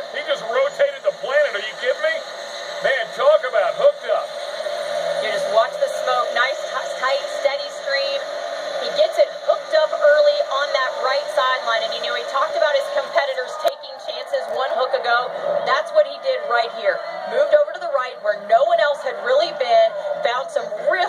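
Television sports commentary heard from the set's speakers, voices running through the whole stretch over a steady drone.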